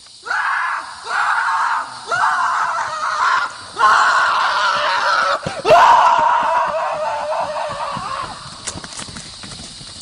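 A person screaming: several short screams about a second apart, then one long scream that trails off over a few seconds.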